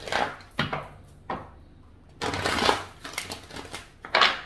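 A deck of oracle cards being shuffled by hand: a few short slaps and snaps of the cards in the first second or so, then a longer rustling shuffle about two seconds in.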